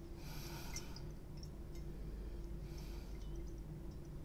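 A man sniffing wine from a glass held to his nose: two long inward breaths through the nose, about two and a half seconds apart, over a faint steady room hum.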